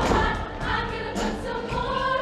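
Mixed-voice show choir singing together over instrumental accompaniment with a steady beat.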